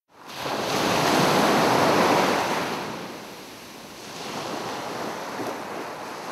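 Sea waves washing in: a rush of surf that swells for about two seconds, ebbs, and then rises again.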